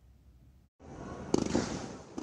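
Fireworks going off: after near silence, a dense crackling rush of bursts begins just under a second in, with one sharper bang about halfway through.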